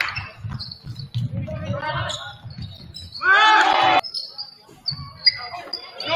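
Game sound on a gym floor: short high sneaker squeaks on the hardwood and a basketball bouncing, with a loud drawn-out call about three seconds in.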